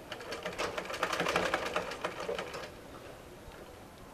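Domestic sewing machine stitching a seam in cotton fabric: a quick, even run of stitches lasting about two and a half seconds, then it stops.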